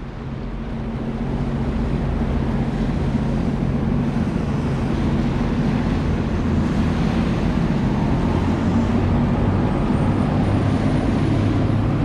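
Sea-Doo GTX 170 personal watercraft engine running steadily at low revs, a constant low hum, over the continuous rush of fast river water, growing slightly louder through the clip.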